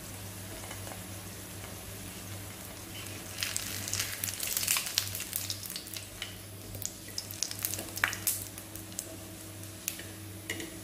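A batter-coated piece of chapati shallow-frying in oil on a flat tawa, sizzling, with a dense run of crackles and pops from about three and a half to nine seconds in as a steel spatula works under it and turns it. A steady low hum runs underneath.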